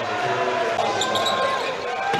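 Basketball game sound in an arena: sneakers squeaking on the court and the ball bouncing, over steady crowd noise.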